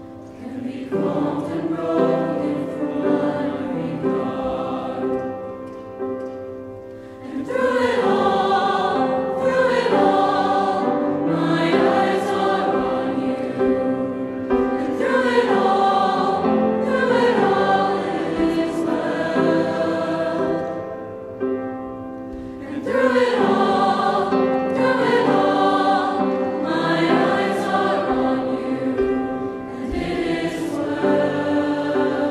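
Mixed choir of women's and men's voices singing slow, sustained chords, the phrases swelling and easing, with brief dips between phrases about seven seconds in and again a little past twenty seconds.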